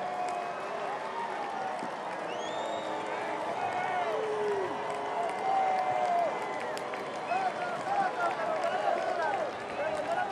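Ballpark crowd: a steady hum of many voices with scattered shouts and calls from the stands, and some light applause.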